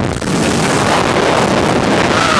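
Loud, steady wind rushing over the microphone of a slingshot ride capsule as it flies through the air.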